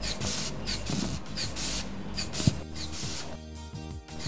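Rubber inflation bulb of a mercury sphygmomanometer being squeezed by hand again and again, giving a series of short hissing puffs of air as the arm cuff inflates.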